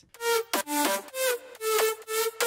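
Future house lead made of several stacked Sylenth1 synth layers playing a melody of short notes: a distorted main sound doubled by wider chorus and unison copies.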